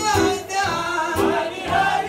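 Male singer singing with a live acoustic swing band: upright bass and acoustic guitar keeping a steady beat beneath the voice.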